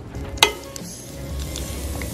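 A raw egg lands with a sharp crack on a hot griddle plate about half a second in, then sizzles as it starts to fry.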